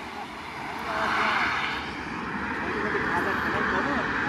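A car driving past on the road: a steady rush of tyre and engine noise that swells about a second in and holds.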